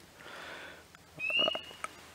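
Quiet night-time pond with one spring peeper giving a single short, rising peep about a second in, after a soft hiss.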